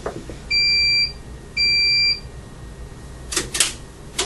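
Laboratory surge generator giving two steady, high electronic beeps about a second apart while it charges for a high-voltage surge test, followed by two short clicks near the end.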